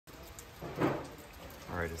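A quiet stretch with faint background noise and one brief soft sound a little under a second in, then a man starts speaking near the end.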